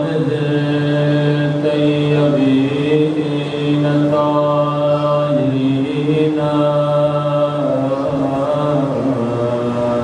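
Unaccompanied devotional chanting by voices, sung in long held notes that shift slowly from one pitch to the next.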